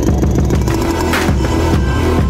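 Background music with a deep, sustained bass and a steady beat, with a short hissing swell a little after a second in.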